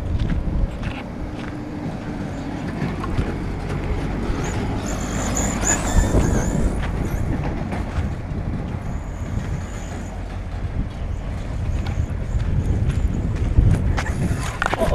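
RC 4x4 truck driving over a gravel dirt track, heard close up from on board: a steady rough rumble of tyres and chassis on the gravel, with a thin high whine about five seconds in and again near ten seconds.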